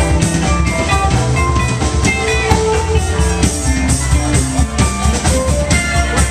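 Live rock band playing an instrumental jam passage with electric guitars, bass and drum kit.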